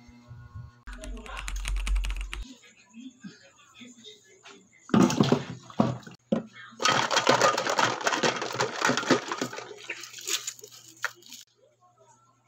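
Water being fetched from a faucet in a large plastic jug: splashing with knocks and clatter of the plastic. It comes in bursts, a short loud one about five seconds in and a longer, dense one from about seven to eleven seconds.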